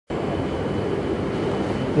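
Steady rumbling hum of a railway station concourse, with a faint steady high-pitched tone running through it.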